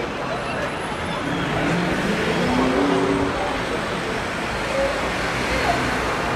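Traffic noise from cars driving through a city intersection, with a steady wash of road and engine sound and indistinct voices.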